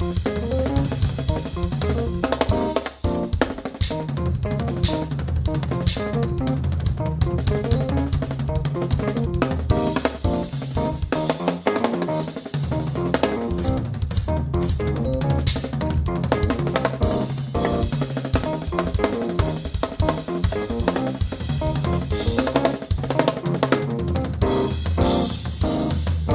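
Live drum kit and keyboard jam: busy drumming with kick, snare and repeated Zildjian cymbal crashes over sustained keyboard chords and bass notes.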